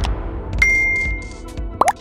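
Animated logo sting: a low musical bed with a bright ding about half a second in that rings on for about a second, then a short rising swoop near the end.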